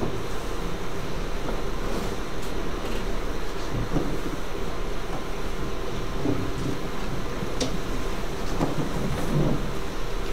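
Steady low rumbling room noise with a faint hum, with brief, faint murmurs of voices now and then.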